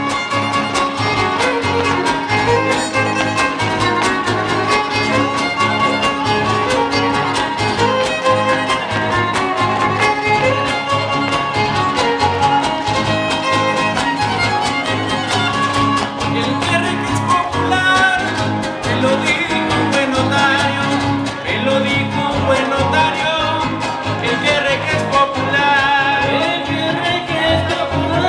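Huasteco string music (son huasteco, huapango) played instrumentally: a violin carries the melody over steadily strummed rhythm guitars (jarana and huapanguera).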